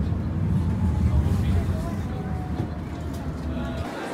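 City bus engine and road noise heard from inside the passenger cabin as a steady low rumble, with indistinct voices; it cuts off just before the end.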